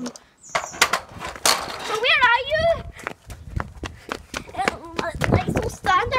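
A child's high voice making wordless sounds, with a wavering squeal about two seconds in, among scattered clicks and knocks.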